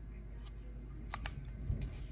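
A UV flashlight and a watch being handled: two quick sharp clicks just over a second in, with a fainter tick before them and soft knocks after.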